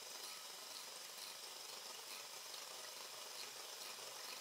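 Near silence: only a faint, steady hiss. The electric hand mixer seen beating the milk is not heard at its normal level.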